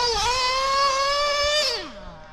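TLR 8ight XT 1/8-scale nitro truggy's engine held at high revs, its high whine creeping slowly up in pitch, then falling away steeply near the end.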